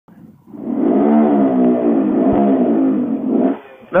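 Honda Grom's 125 cc single-cylinder engine revved hard and held at high revs for about three seconds, then let off. This was a burnout attempt that failed with a passenger aboard, which the rider puts down to too much weight over the rear end.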